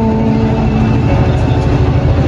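Singing with long held notes that slide between pitches, over a heavy, steady low rumble.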